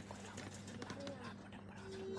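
Faint voices and a few scattered light clicks over a steady low electrical hum.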